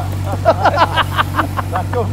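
A flock of game birds giving a rapid run of short calls, each dropping in pitch, about seven a second, over a steady low engine drone.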